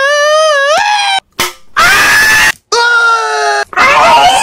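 A man screaming: several loud, high, held cries that waver in pitch, broken by short gaps, the last sagging slightly in pitch.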